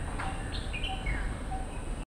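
Birds chirping in the background: a few short, high calls and a falling chirp, over a low steady rumble.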